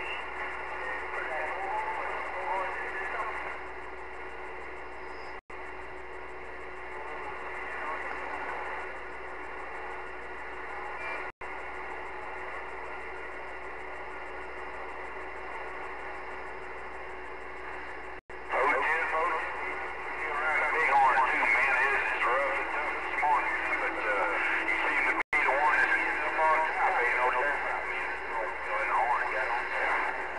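Receive audio from a Galaxy CB radio's speaker: faint, unintelligible voices of distant stations, thin and band-limited, mixed with static. The voices are fading in and out with skip conditions and grow louder and busier about eighteen seconds in. The sound cuts out for an instant several times.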